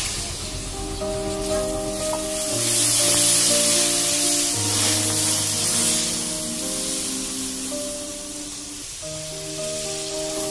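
Water poured into a karahi of hot oil and fried spice paste, sizzling and hissing loudly, loudest from a couple of seconds in to past the middle and then dying down, over background music.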